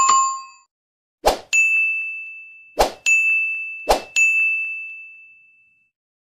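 Subscribe-animation sound effects: a short chime, then three sharp click sounds, each followed a moment later by a notification-bell ding that rings and fades over a second or so. The last ding fades longest.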